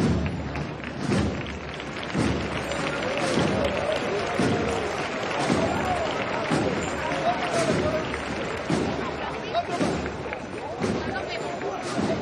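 A processional band's bass drum beating a steady step, about one stroke a second, with men's voices calling over it.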